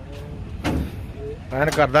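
A man's voice speaking near the end, after a quieter stretch with one brief scuffing noise less than a second in, over a low steady rumble.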